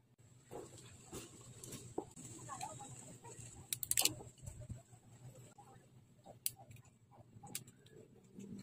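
Hard plastic model-kit parts clicking and snapping as they are handled and pressed onto the figure, with the loudest cluster of clicks about four seconds in, over a faint steady hum.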